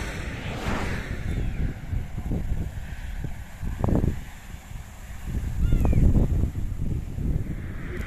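Wind buffeting the microphone in gusts, with a motorcycle going past on the road about midway; the strongest gusts come a little after it.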